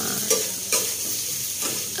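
Diced potatoes and vegetables sizzling in hot oil in a steel kadai, with a flat metal spatula scraping and turning them a few times.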